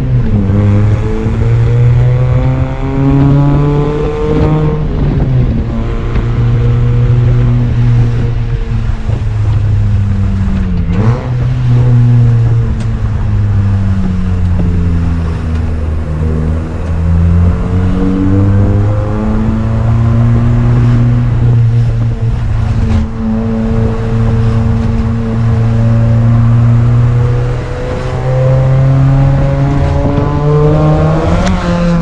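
Mini Cooper S R53's supercharged 1.6-litre four-cylinder engine, heard from inside the cabin while driving. It rises in pitch under acceleration, drops sharply at gear changes, slows and falls in pitch midway, then pulls up again near the end.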